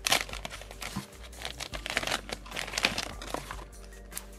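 Plastic soft-bait bag crinkling and rustling as it is pulled open by hand and the plastic bait tray is slid out: an irregular run of crackly rustles, loudest right at the start and again about two to three seconds in.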